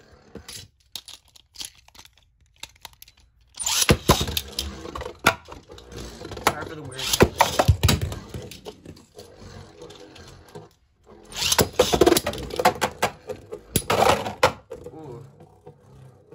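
Beyblade tops spinning in a plastic stadium, clattering and scraping against each other and the bowl in two long stretches of rapid knocks, after a few scattered clicks at the start.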